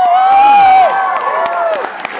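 Audience cheering. Several people hold long whoops that rise, hold for about a second and tail off.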